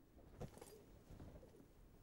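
Near silence: faint room tone, with one soft short knock about half a second in.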